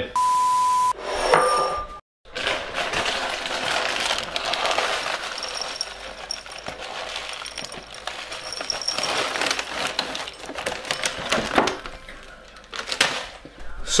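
The last few crumbs of breakfast cereal being shaken out of a nearly empty box into a ceramic bowl, making a long run of small dry clicks and rattles against the bowl. It is preceded by a short electronic beep and a second, slightly higher tone.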